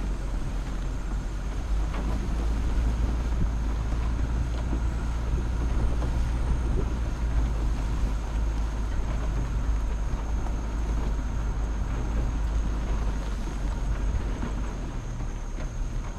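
A vehicle's engine running steadily with a low rumble while the vehicle moves slowly, heard from a camera mounted on its hood. A faint, steady high tone sits above it.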